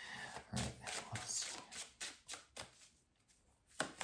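Tarot cards being handled and laid down on a table: a faint, irregular run of short papery clicks and rustles.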